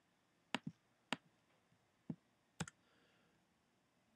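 Faint clicks from a computer mouse and keyboard, about six short clicks scattered through a few seconds, some of them in quick pairs, as text in a file-name box is selected and deleted.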